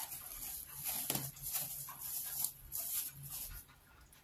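Thin plastic wrapping crinkling and rustling in a quick run of crackles as it is pulled off a ball of fufu.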